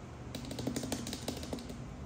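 Oracle cards being handled and laid down on a wooden table: a quick run of light clicks and taps as the cards are set into the spread.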